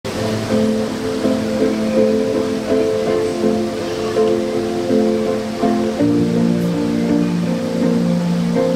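Recorded backing music playing slow, sustained chords that change about every half second to a second, with no drums struck yet.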